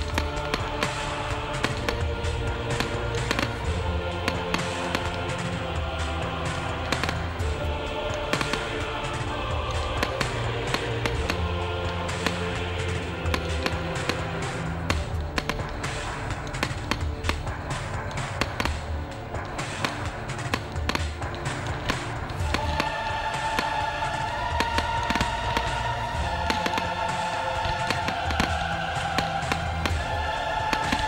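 A fireworks display set to music: shells bang and crackle many times over, mixed with the show's music. The music carries long held notes in its last third.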